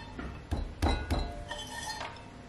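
Three or four sharp metallic clinks with a short ring, about half a second to a second in, as a loop trimming tool knocks against the spinning aluminium potter's wheel head.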